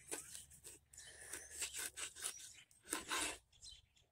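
A knife slicing and fingers pulling at a jalapeño on a wooden cutting board: several short, faint crackles and scrapes.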